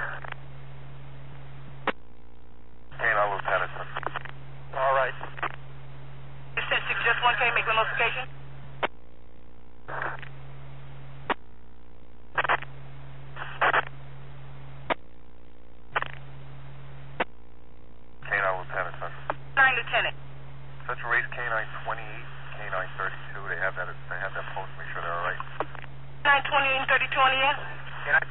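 NYPD and FDNY two-way radio traffic heard through a police scanner: a string of short, thin-sounding voice transmissions, unclear to the ear. A low steady hum sits under each keyed transmission and cuts off with a click when it ends.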